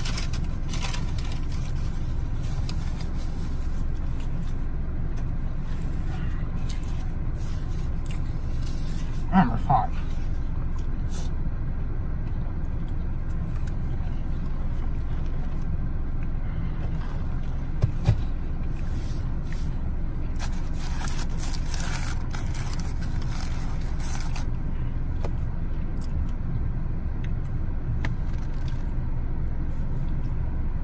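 Steady low hum of a car cabin, its engine and ventilation running, with faint chewing and crinkling of a paper sandwich wrapper over it. A short voiced sound comes about nine seconds in and a single soft knock about eighteen seconds in.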